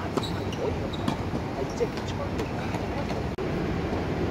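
A tennis ball struck by rackets and bouncing on a hard court: a few sharp pops in the first two seconds, over steady urban background noise.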